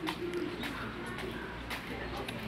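Dove cooing in a few short, low notes over a steady low hum.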